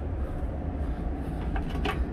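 A steady low hum of background machinery, with a faint click near the end.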